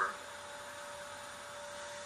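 A steady faint hum at one pitch over a thin background hiss, with no other events.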